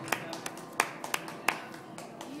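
A few scattered handclaps from a small audience as a piano song ends, over low room chatter.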